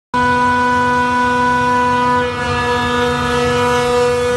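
PSA oxygen generator plant machinery running: a loud, steady hum with a stack of whining tones. Its lowest tone drops out a little past halfway.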